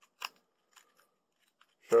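A single sharp click about a quarter of a second in, followed by a couple of faint ticks; a man's voice begins right at the end.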